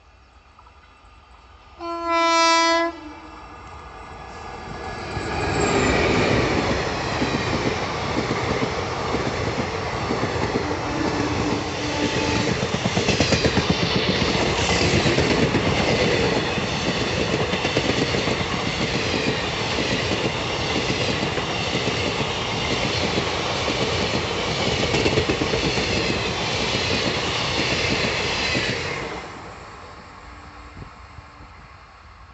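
A WAP-4 electric locomotive sounds one horn blast about a second long, about two seconds in. The locomotive and its long rake of passenger coaches then pass close by at speed with a loud, steady rumble and the rhythmic clatter of wheels over the track. The sound falls away near the end.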